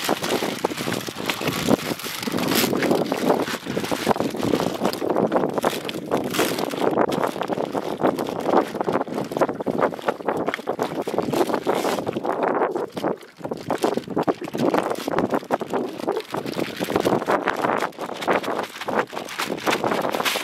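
Wind buffeting the microphone, with a plastic bag rustling and crinkling as hands press an oily chum ball out of it into a mesh chum bag.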